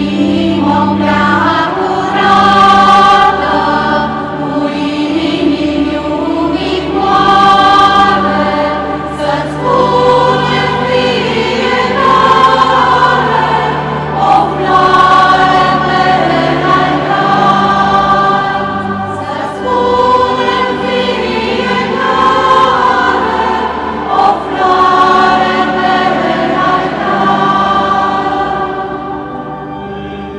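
Church choir singing a hymn over sustained organ notes, the voices moving from one long held note to the next.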